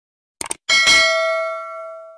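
Notification-bell sound effect of a subscribe animation: a quick double click about half a second in, then a bright bell ding that rings out and fades over about a second and a half.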